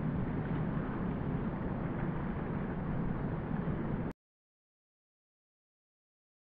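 Wind buffeting the camera microphone outdoors on a beach: a steady low rumbling noise without any clear tone, which cuts off abruptly about four seconds in.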